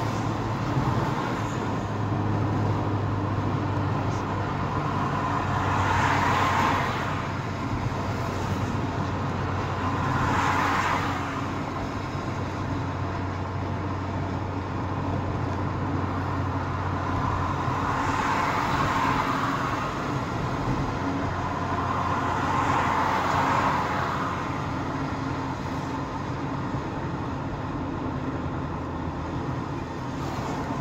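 Car driving on a highway: steady engine and tyre road noise with a low hum, and four swelling rushes of noise as traffic goes by.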